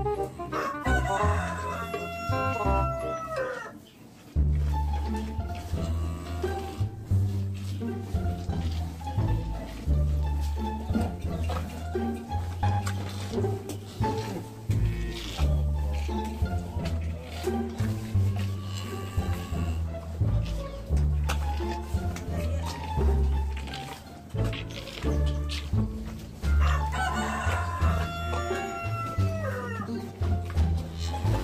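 A rooster crowing twice: once about a second in and again near the end, each crow a long call that falls away at the end. Background music with a heavy, steady bass beat plays throughout.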